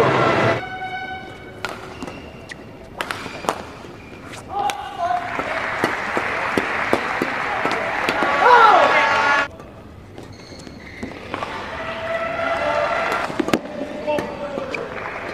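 Badminton rally in an indoor hall: sharp cracks of rackets hitting the shuttlecock, and shoe squeaks on the court near the start. Crowd noise and shouting swell from about five seconds to nine and a half, and voices rise again near the end.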